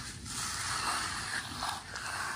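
Long-handled rubber squeegee scraping across a wet, coated concrete pool deck: a rough hiss that comes in short stretches as the blade is pushed along.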